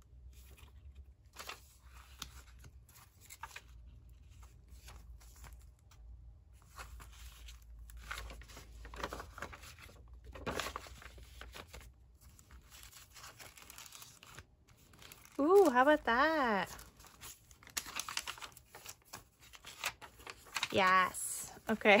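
Paper pages being handled and shuffled: soft, irregular rustles and light taps of paper and card sliding against one another. About two-thirds through, a brief wordless voice slides up and down in pitch.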